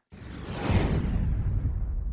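Swoosh transition sound effect: a rushing noise that starts suddenly, with a deep rumble underneath, its hiss fading away over about two seconds.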